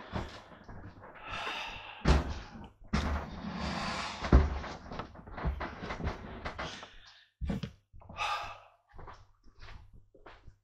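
Rustling and handling noise close to the microphone, broken by several knocks and thumps, the loudest about four seconds in, as a person moves right in front of the camera.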